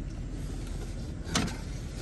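Vehicle engine idling, a steady low rumble heard from inside the cab, with one short sharp noise about a second and a half in.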